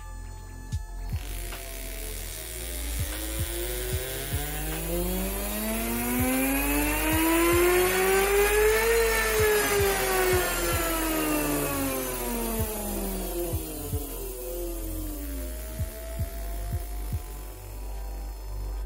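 Large brushed DC motor driven by PWM through an H-bridge, speeding up in reverse: its whine rises in pitch for about nine seconds to full speed, then falls steadily as the duty cycle ramps back down and the motor slows.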